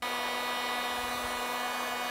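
Electric heat gun running steadily, a fan-motor whine over a low hum, as it blows hot air onto heat-shrink tubing over a crimped wire connection. It starts abruptly at full level.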